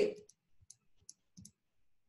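Computer keyboard keys being typed: about five faint, separate key clicks as a few characters are entered.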